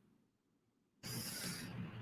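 Near silence: the audio cuts out completely for about a second, then faint hiss returns, a dropout in the video-call audio in the middle of a sentence.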